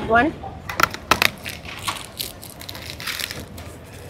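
Cardboard snack box being torn open by hand, with a few sharp clicks and rips of the card about a second in, then crinkling of the plastic-wrapped packets inside.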